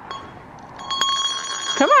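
A bell rung as a recall signal to call a horse, ringing steadily in several high tones, louder from about a second in.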